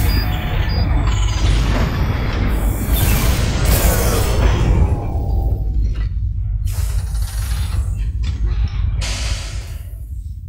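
Sci-fi show soundtrack of machinery sound effects: booms, clanks and whooshes over a constant deep rumble, with music underneath. The sound is a dense wash at first, then breaks into separate hits about halfway through.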